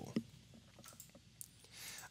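A few faint computer-mouse clicks as the on-screen order totals are selected, with a soft breath just before the end.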